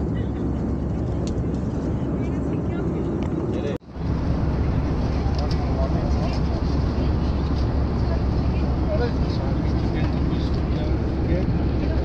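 Steady cabin noise of a jet airliner in flight: a constant low rumble of engines and rushing air. It cuts out for an instant about four seconds in, then carries on slightly louder.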